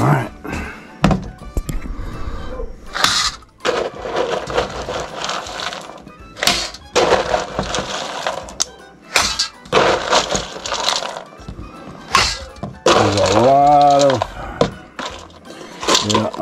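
Dry dog kibble poured into stainless steel bowls, rattling against the metal in several separate pours. A low voice sounds briefly near the end.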